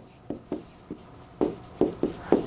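Stylus writing on an electronic whiteboard screen: about six short taps and scratches as characters are written stroke by stroke.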